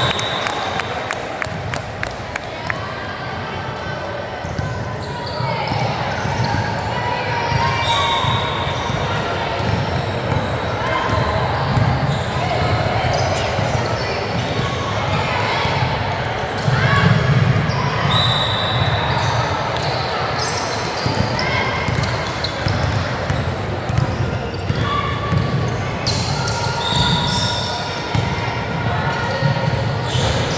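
A basketball game in a large gym: the ball bouncing on the hardwood court, with players' and spectators' voices echoing around the hall.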